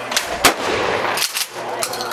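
A 20-gauge shotgun fires once, a single sharp report about half a second in, with a few fainter sharp cracks before and after it.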